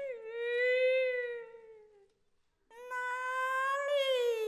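A woman's voice drawing out Kunqu opera lines in long held syllables. The first held note slowly sags and fades about two seconds in, and after a short pause a second long, drawn-out phrase begins and rises slightly toward the end.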